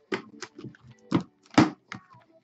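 Boxes of sports cards being handled and set down on a desk: a series of short knocks and scuffs, the loudest two about a second in and a little after.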